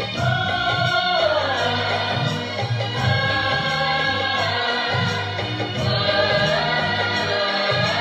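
A woman singing a Hindi devotional song (a Ram bhajan) into a microphone over a karaoke backing track. She holds long notes that slide down about a second in and rise again near the end, over a steady beat.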